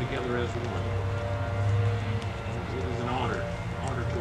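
A low, steady engine drone that swells briefly around the middle, under faint murmured voices.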